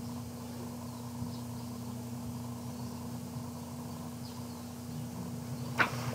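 Steady low electrical hum with a faint background hiss, and one short sharp sound near the end.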